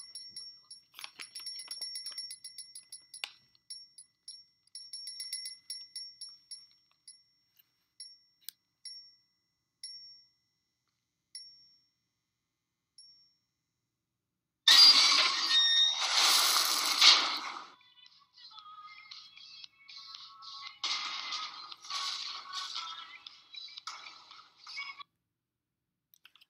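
Film soundtrack. It opens with quick high-pitched ticking chirps that thin out and stop, leaving near quiet. About 15 seconds in a dumpster is hurled with a sudden, loud crash and clatter lasting a few seconds, followed by quieter music.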